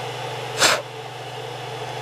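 One short, sharp puff of breath a little over halfway through, blowing dust off a 3D printer's hotend.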